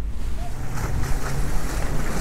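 Wind blowing across the microphone in a steady low rumble, over the wash of choppy water around the sailboat.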